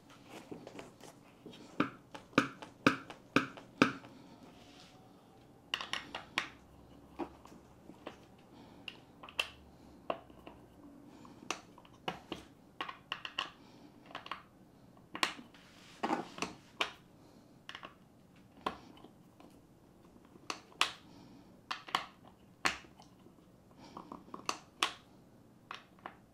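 An Allen key clicking and tapping against the bolts and seat plate of an office chair as the bolts are screwed down during assembly: irregular sharp clicks, some in quick runs, with short pauses between.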